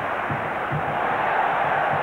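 Football stadium crowd noise: a steady din of many supporters' voices.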